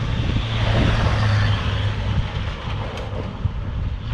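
1993 first-generation Ford Explorer, with its V6, driving along a rough road. A steady low engine hum and tyre noise are strongest in the first half, then ease off.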